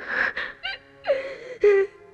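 A person crying and sobbing: sharp gasping breaths, then short whimpering cries about half a second and a second in.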